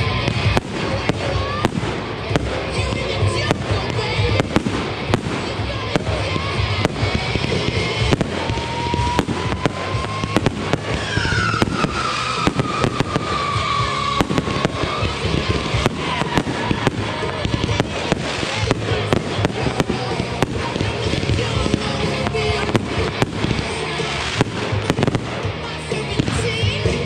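Fireworks barrage: aerial shells launching and bursting one after another, with frequent sharp bangs and crackle.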